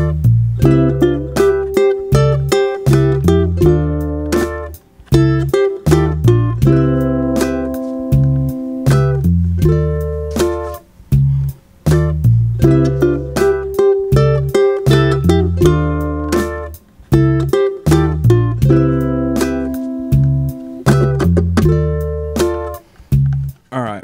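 Ukulele playing a soul-style fill in thirds and fourths over Cmaj7 and Dm7, with a slide and a double pull-off, against a backing track with bass and drums. The phrase repeats about every six seconds.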